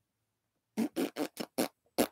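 A man's vocal "thinking noise": a string of short, separate mouth sounds, about five a second, starting under a second in.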